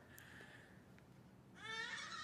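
Near silence, then about one and a half seconds in a small child's high-pitched vocal squeal that rises in pitch.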